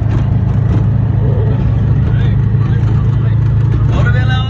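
Engine and road noise of a small three-wheeled auto-rickshaw heard from inside its cab while it drives along, a loud, steady low hum.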